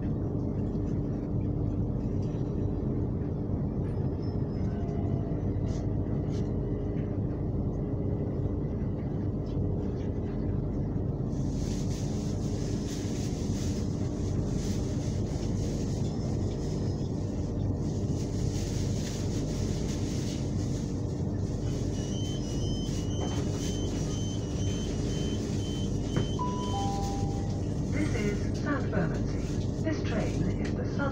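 Inside a moving Southern electric train: the steady rumble and hum of the wheels and traction motors, with a hiss of rail noise joining about a third of the way in. Near the end, a falling two-note chime sounds over the on-board PA, the kind that comes just before a station announcement.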